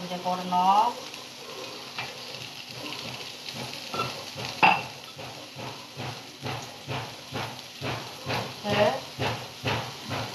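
Onions, green chillies and spices frying in oil in a non-stick pan, with a low sizzle and spoon sounds against the pan. A short burst of voice comes at the start and a sharp knock near the middle. A run of soft regular knocks, about two a second, fills the second half.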